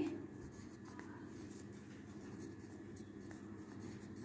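Pencil writing on paper: faint scratching as a word is written letter by letter into a printed crossword grid.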